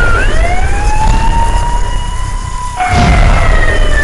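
Siren wailing over a heavy low rumble: one long rising wail, cut off abruptly about three seconds in and followed by a falling wail.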